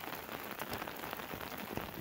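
Rain falling on an umbrella overhead: a steady hiss dotted with many small drop ticks.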